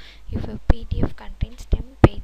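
Speech only: a person talking in short, broken phrases whose words are not made out.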